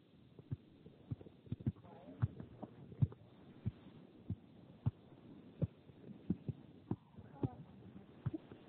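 Soccer ball being juggled: a string of dull, short thumps at an uneven pace, roughly two a second, as the ball is struck again and again.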